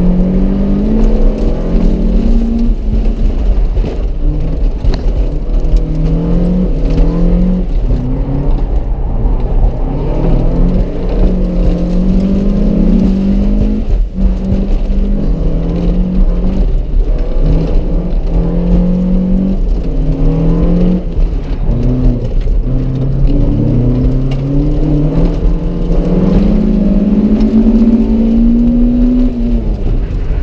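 Honda CRX's engine, heard from inside the cabin, pulled hard and let off again and again. Its pitch climbs and drops every second or two over a steady low road and wind rumble, sinking lower a little past two-thirds of the way in and then making one long climb near the end.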